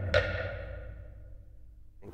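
Orchestral music closing on a single percussive stroke that rings out and fades away over about a second and a half.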